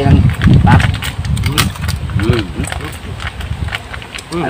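Small cooked fiddler crab shells being cracked and crunched between fingers and teeth, a scatter of short sharp clicks, with brief murmured voices and a low rumble in the first second.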